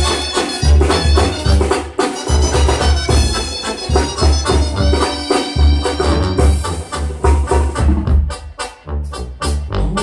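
Live Mexican brass band (banda) playing on stage: brass over a pulsing bass beat with percussion. Near the end the band thins out to scattered percussion hits.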